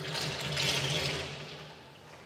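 A sudden rush of splashing water in a dog's bath, swelling for about a second and then fading, over a low hum.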